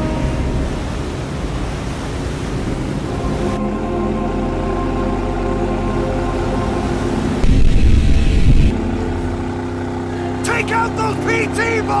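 Sea-wave noise with a steady low drone and sustained background music. A louder low rumble lasts about a second midway through, and a voice comes in near the end.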